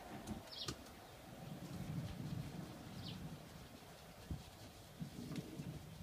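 Faint pigeon cooing, low and drawn out, about two seconds in and again near the end. A few light knocks come from the paintbrush against the plastic paint tub.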